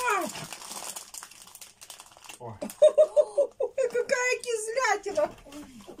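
Plastic candy packaging crinkling for about the first two seconds as candies are taken out. This is followed by high voices laughing and exclaiming without clear words, in a run of quick pulses.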